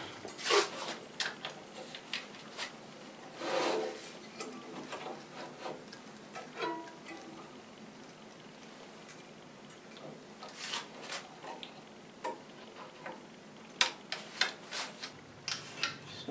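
Scattered light knocks and clicks of a log and its metal clamp hardware being handled on an aluminium sled carriage, with a brief rustling scrape a few seconds in; the band saw is not running.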